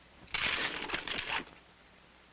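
A leather saddlebag and its contents being rummaged through by hand: about a second of rustling with small light clicks and clinks.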